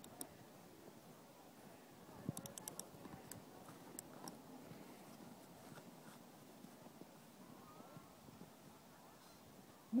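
Mostly quiet, with a short run of quick faint clicks about two seconds in from a snowboard binding's ratchet strap being tightened, and a few scattered small knocks from handling the binding.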